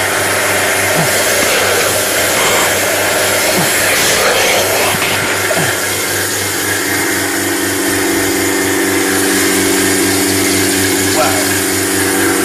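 Camel milking machine running with a steady motor drone.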